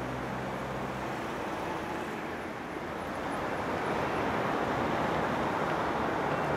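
Road traffic: a steady rush of passing cars, growing a little louder partway through.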